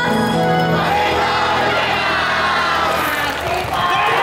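Yosakoi dance music playing loudly; from about a second in, many voices shout together over it, with a brief dip near the end.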